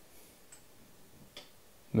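Quiet room tone with a couple of faint clicks, then a man's voice starting near the end.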